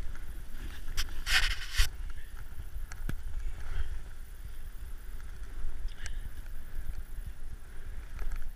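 Wind rumbling on a GoPro camera's mic as a snowboard rides through powder, with a faint hiss of snow under the board. About a second and a half in there is a brief, louder hiss lasting half a second, and a couple of short ticks come later.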